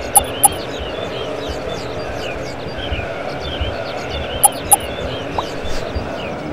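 A steady, dense crowd ambience with scattered bird-like chirps that seems to repeat as a loop. Twice, a pair of short, sharp electronic beeps cuts through: once near the start and again about four and a half seconds in.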